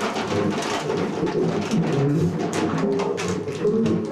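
Live improvised jazz: a drum kit struck in quick, irregular hits over short, shifting low pitched notes from the other instruments.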